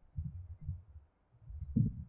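Soft, low thumps and rumble picked up by a clip-on microphone on a speaker's robe, in a pause between spoken phrases: two short clusters, one just after the start and one shortly before the end.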